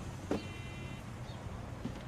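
Quiet background with a steady low hum, broken by one short click about a third of a second in and a faint, brief high tone just after.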